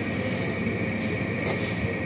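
Steady mechanical hum of a bus station waiting hall, an even drone with a thin high whine running through it.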